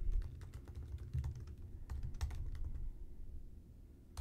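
Typing on a computer keyboard: a quick run of key clicks entering a short search phrase, stopping about three seconds in.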